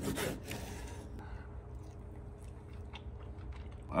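Faint soft sounds of cooked prime rib being carved with a long knife, then of a bite of it being chewed, over a low steady room hum.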